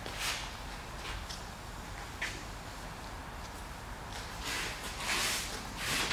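Rescue rope being hauled hand over hand through a pulley in a 3:1 mechanical advantage system: repeated swishing strokes of rope sliding through gloved hands, with a small click about two seconds in.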